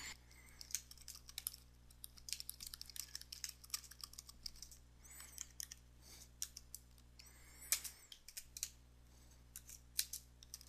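Computer keyboard typing: faint, irregular, quick key clicks, pausing for about a second and a half near the end.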